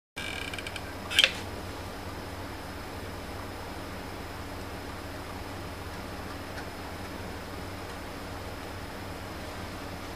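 A steady mechanical hum, like a fan, runs throughout. In the first second there is a brief high-pitched tone, and about a second in there is one sharp click, the loudest sound.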